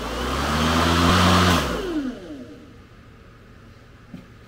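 EGO LM2100 cordless electric lawn mower's motor and blade spinning up with a rising whine, running at full speed for about a second, then coasting down with a falling whine about two seconds in. It runs now after a control board (PCB) swap, which cured the mower cutting out as if the battery were dead.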